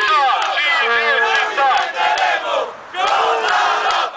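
A crowd of protesters shouting together, many voices at once in two loud stretches with a short break a little before the third second, with some hand clapping among them.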